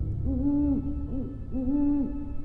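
An owl hooting three times, a long call, a short one and another long one, over a low steady rumble.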